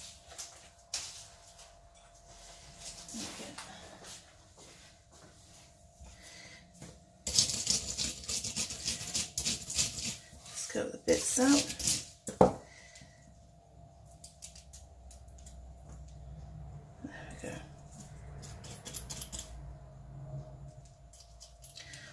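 Cardstock and a metal cutting die handled on a craft mat. There are a few seconds of loud rustling and scraping with small clicks about a third of the way in, ending in one sharp click, then only soft taps and faint scratching as the cut pieces are cleared from the die.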